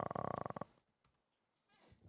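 A man's drawn-out hesitation "uh" in a creaky, rattling vocal fry lasting under a second, followed by silence.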